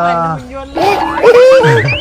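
Comic cartoon sound effects: springy boing-like pitch glides starting about a second in, rising steeply near the end, laid over background music.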